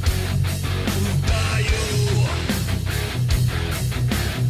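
Heavy metal band music: distorted electric guitars play a low repeating riff over drums.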